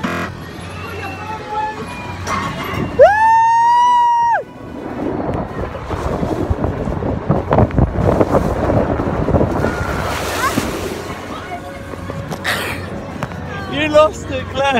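A rider lets out one loud, high-pitched scream lasting about a second and a half, a few seconds in. Water then rushes and sloshes for several seconds as the inflatable raft slides down the water slide.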